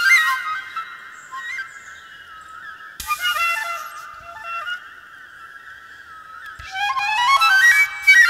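Solo transverse flute playing a melodic line over a steady held high tone, with breathy, airy attacks about three seconds in and again near the end, where a quick rising run of notes climbs to the loudest point.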